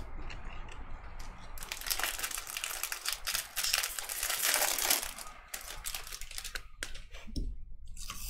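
Foil wrapper of a 2022 Topps Series 1 jumbo pack being torn open and crinkled, a dense crackle for a few seconds. Then a run of separate light clicks as the stack of cards is thumbed through.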